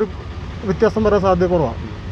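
A man speaking Malayalam into a handheld interview microphone, in a short phrase about halfway through, over a steady low vehicle rumble.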